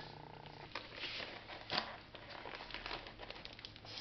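Faint crinkling and crackling of plastic food packaging being handled and set down, with a few light ticks and one sharper click just under two seconds in.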